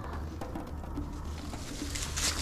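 A bird cooing faintly in the background over a steady low rumble.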